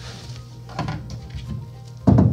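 Background music, with a short faint clunk a little under a second in as a vinyl-wrapped aluminium storage hatch lid on a boat's bow casting deck is lifted open.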